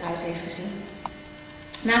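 Steady electrical mains hum, with the tail of a piece of music dying away at the start. A woman's voice begins speaking near the end.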